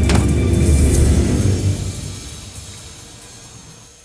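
A deep rumble with a sharp hit at its start, fading steadily away over about three seconds.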